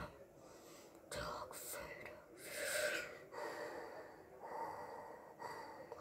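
A boy's slow, breathy hisses, three long breaths in and out, in an imitation of Darth Vader's respirator breathing.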